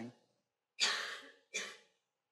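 A person coughing twice: a sharp cough about a second in that trails off, then a shorter one right after.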